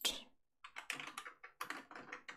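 Typing on a computer keyboard: a quick run of key clicks beginning about half a second in.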